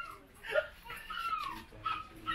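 A dog whining in a few short, high whimpers that fall in pitch.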